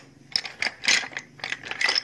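Hard seashells clacking and clattering against each other as a hand stirs through a heap of them, a string of sharp clicks about half a second apart.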